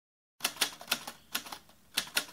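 A quick, irregular run of sharp clicks, like keystrokes, six in under two seconds, cut off abruptly.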